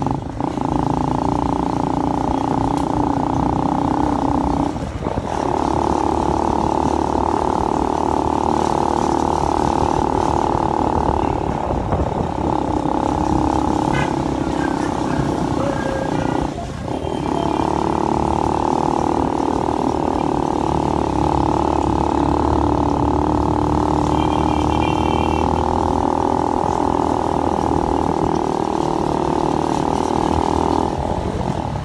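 Motorcycle engine running steadily under way, heard from the rider's seat. The engine note dips briefly three times, about five, twelve and seventeen seconds in.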